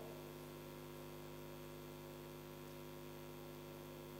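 Faint, steady electrical mains hum, a stack of even buzzing tones, with light hiss from the microphone and sound system.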